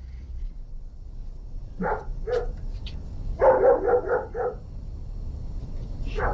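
A dog barking: two short barks about two seconds in, then a quick run of five barks from about three and a half seconds.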